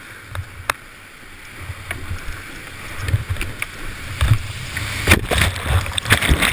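Whitewater rushing and splashing around a plastic whitewater kayak as it slides down a steep rock face and over a waterfall, louder through the second half. A few sharp knocks, the loudest about five seconds in, as the hull and paddle hit rock and water.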